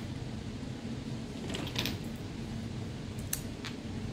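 Steady hum of a room air conditioner running, with a few light clicks and rustles from small plastic fragrance refills being handled, around the middle and once near the end.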